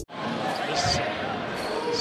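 Basketball game in an arena: a ball dribbling on the hardwood court over the murmur of the crowd.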